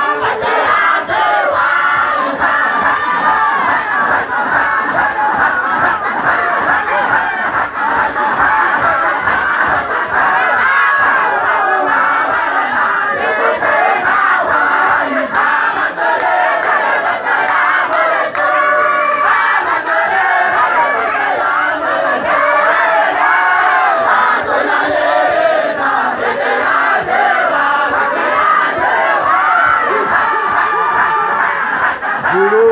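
A large group of men chanting together in a Sufi daira (dhikr), many voices loud and steady without a break.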